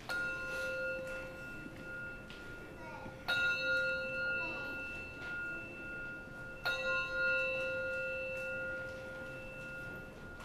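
A bell struck three times, about three seconds apart, each stroke ringing on with a long, slowly fading tone. It is an altar bell rung as the communion bread is elevated at the words of institution.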